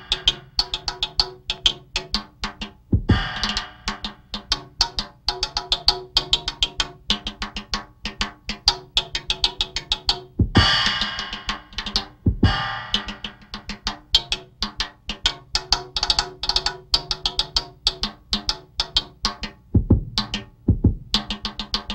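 Drum kit played in a fast improvised solo: rapid snare and tom strokes, with cymbal crashes and bass drum hits about three seconds in and again around ten and twelve seconds.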